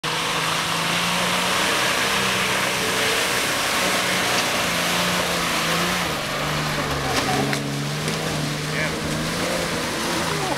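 Nissan Patrol 4x4's engine working hard under heavy load as it powers through deep mud, with a steady note that dips in pitch about six to seven seconds in, over a dense wash of tyre and mud noise.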